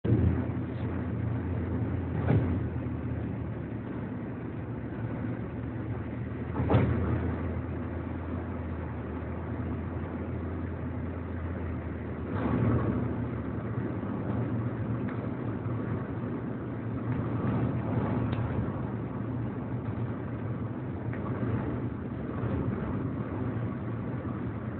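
Steady engine hum and road noise of a moving road vehicle, with a few brief louder swells about 2, 7 and 12 seconds in.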